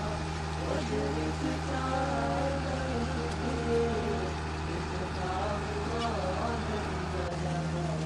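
Steady low engine drone of a citrus harvesting machine running, with a voice talking over it. The drone shifts slightly near the end.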